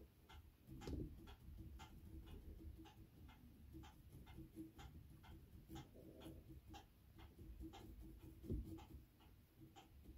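Faint, steady ticking, like a clock in a quiet room, about two and a half ticks a second at an even pace, with a couple of soft low knocks.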